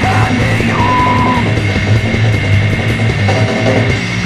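Grindcore band playing: distorted guitar and bass over drums, with yelled vocals.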